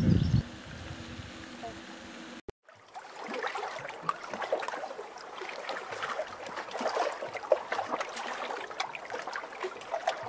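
Water splashing and trickling steadily, a busy patter of drops, starting after a faint low hum and a brief dropout a couple of seconds in.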